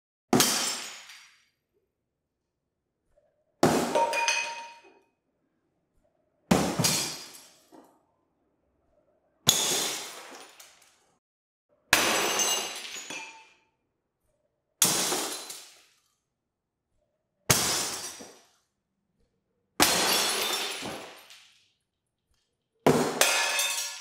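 Glass beakers smashing one after another, nine times in all, about every two and a half to three seconds. Each is a sharp crash followed by tinkling shards that die away within a second or so.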